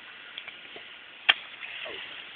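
Faint steady outdoor background hiss with one sharp click a little over a second in and a couple of softer ticks; the bottle bomb has not burst yet.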